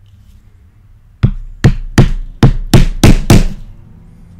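A leather stitching chisel struck seven times in quick succession, about three blows a second starting about a second in, punching stitching holes through leather into a polyboard pad on an anvil.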